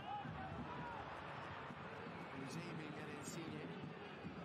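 Soccer match broadcast audio at low volume: steady stadium crowd noise with a commentator's voice faintly over it.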